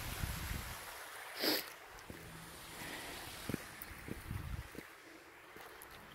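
Outdoor noise of wind on the phone microphone over faint flowing water. Soft low thumps come and go, and a brief louder rush of noise comes about one and a half seconds in.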